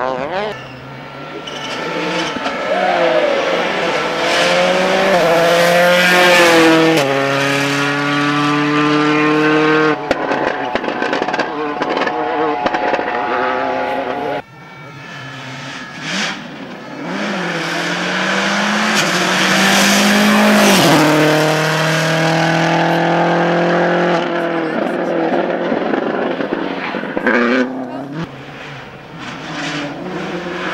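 Rally cars at full throttle on a tarmac stage. In the first half an engine's pitch climbs and steps down several times with the upshifts as the car accelerates. After a sudden cut a Subaru Impreza WRC's turbocharged flat-four approaches, its pitch rising and then falling as it lifts off for the corner.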